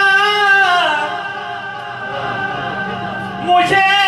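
A man singing a naat unaccompanied, holding a long note that falls away about a second in. Quieter voices follow, and the singing comes back loud near the end.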